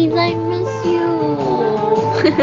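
A woman singing over a backing music track, holding long notes that glide between pitches.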